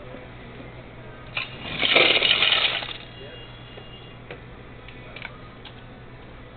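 Self-serve soda fountain dispensing into a cup: a click, then a loud noisy burst lasting about a second, over a steady low hum.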